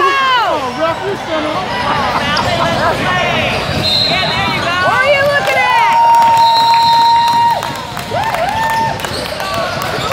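Gym game sounds: a basketball bouncing, sneakers squeaking in short chirps on the hardwood floor, and shouts from players and onlookers. About six seconds in, a long steady held tone lasts roughly two seconds.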